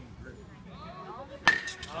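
A youth baseball bat hitting a pitched ball once, about one and a half seconds in: a sharp crack followed by a short ringing tone.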